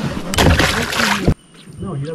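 Water splashing and sloshing for about a second as a large redtail catfish is lowered from a kayak into the river, cutting off suddenly.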